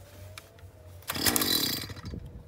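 The small two-stroke engine of a gas-powered ice auger fires with a loud burst of under a second, about halfway in, then dies, its pitch falling as it spins down.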